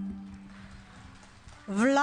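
The final held chord of a solo accordion with folk orchestra fades out, followed by faint, scattered clapping. A loud voice calling out begins near the end.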